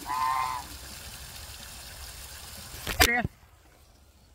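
A domestic goose gives one short honk at the start. About three seconds in there is a loud knock, with a short laugh at the same time.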